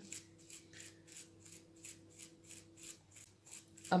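A thumb dragged repeatedly across the bristles of a toothbrush loaded with watered-down white acrylic paint, flicking spatter: a faint, quick, scratchy rasp about five strokes a second.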